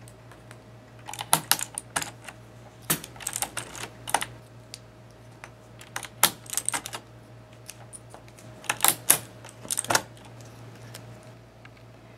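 Plastic keycap puller being clipped over keycaps and pulling them off a mechanical keyboard's Cherry MX switches: sharp plastic clicks and snaps in irregular clusters.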